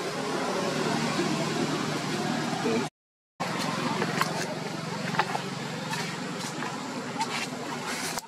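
Steady outdoor background noise with a low, engine-like hum, cut off to complete silence for about half a second around three seconds in, with a few faint clicks.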